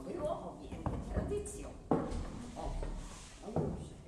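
Low, indistinct voices with two sharp knocks, one about two seconds in and one near the end.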